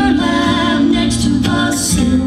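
Bluegrass vocal harmony sung a cappella: a woman's lead voice with men's harmony voices, the bass and guitars dropped out.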